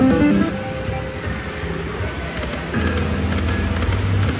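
Pure Cash Dynasty Cash video slot machine playing its free-games bonus music and reel-spin sounds, opening with a short chime as a small win is added.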